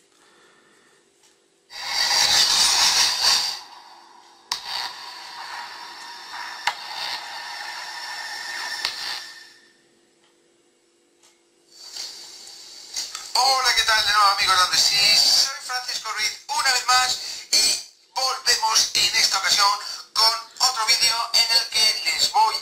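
A YouTube video playing through the Doogee F5 smartphone's built-in loudspeaker. A short, loud noisy sound comes about two seconds in and a quieter noisy stretch follows until about nine seconds. After a pause, speech from the video starts about thirteen seconds in.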